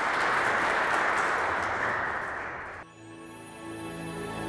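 Audience applauding in a hall, cut off abruptly about three seconds in, where soft music with held notes begins.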